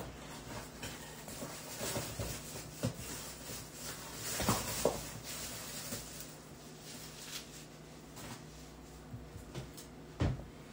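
Faint, scattered knocks and rustles of someone moving about and handling things in a kitchen, over a low steady hum.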